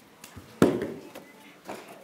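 Knocking on a wooden prop door: three knocks about half a second apart, the first the loudest, its sound dying away over about half a second.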